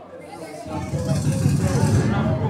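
Several voices at once over a low rumble, growing louder about a second in.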